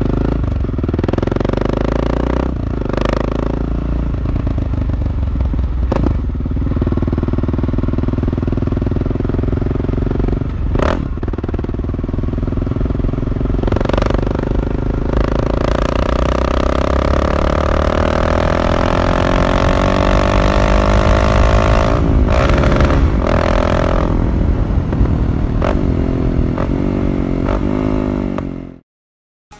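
Motorcycle engine running through a Dore aftermarket exhaust (current model) at low speed while the bike is ridden. The exhaust note dips briefly a few times and rises gradually over the second half.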